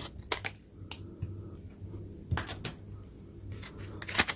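Scissors snipping through a hard clear-plastic blister pack: about five sharp clicks, two near the start, one about a second in and two more past the middle.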